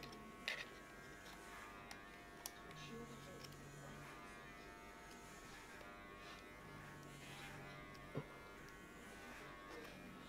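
Electric hair clippers buzzing faintly and steadily during a buzz cut, with a few light clicks as a small camera is handled.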